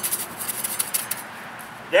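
A flat steel trowel blade patting and scraping dry, slightly frozen sand firmly down around freshly stuck cuttings: a quick run of gritty taps and scrapes for about the first second, then quieter.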